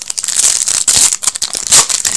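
Foil wrapper of an Upper Deck hockey card pack crinkling and rustling as it is picked up and opened by hand.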